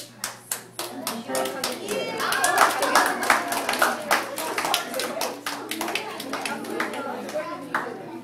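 Small audience applauding: a few scattered claps at first, then many hands clapping together, with voices calling out over the applause in the middle.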